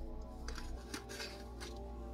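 Plastic spice container being shaken over a bowl, several quick rattling shakes as onion powder is sprinkled out, over soft background music.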